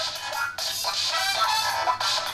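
A ringtone playing as music through the Ulefone Be Touch smartphone's built-in bottom loudspeaker. It sounds thin, with almost no bass.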